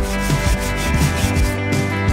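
Stiff-bristle scrub brush scrubbing grime and marine growth off a stainless-steel swim ladder in repeated back-and-forth strokes, with background music playing.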